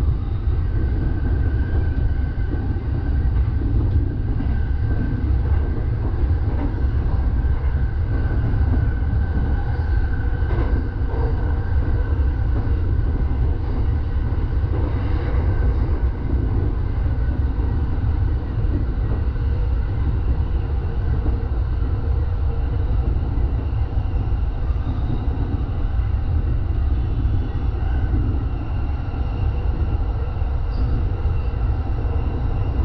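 JR East Joban line electric commuter train running at speed, heard from inside the driver's cab: a steady low rumble of wheels on rail, with a faint steady whine over it for the first half.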